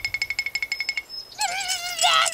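A rapid pulsing ringing tone fades and stops about halfway through. Then comes a cartoon larva's wavering, high-pitched cry.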